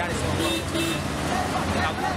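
A man talking in a street interview, over a steady low hum of street traffic; two short high beeps, like a vehicle horn, sound about half a second in.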